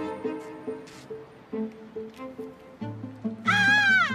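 A woman yelling a long, high-pitched "ah!" as loud as she can, starting about three and a half seconds in, wavering and dropping in pitch as it ends: a defensive shout at an approaching attacker in a self-defence drill. It sounds over background music with a steady beat.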